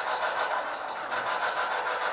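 A steady hiss that pulses evenly, about seven pulses a second.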